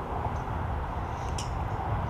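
Steady outdoor background noise: a low rumble with a faint hiss, and one small tick about one and a half seconds in.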